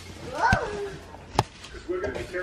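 A toddler's short, high whining squeal that rises and falls in pitch, followed by a single sharp knock.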